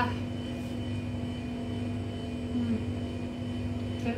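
A steady machine hum with several steady whining tones, like a kitchen appliance motor running. A short low murmur comes partway through.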